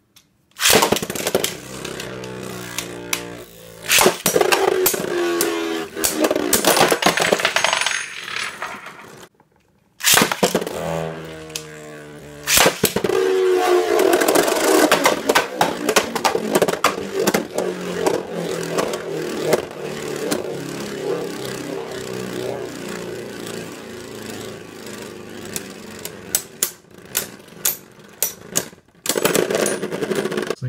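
Beyblade Burst tops Roktavor R4 and Thorns-X Minoboros M4 spin in a plastic stadium, their whir falling in pitch as they slow, with sharp plastic-and-metal clacks as they collide. There are two rounds with a short gap between. Near the end a quick run of clacks as the tops hit and one bursts apart.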